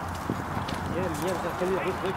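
A man humming a wavering tune without clear words, starting about a second in, over scattered footsteps and light clicks from the group walking.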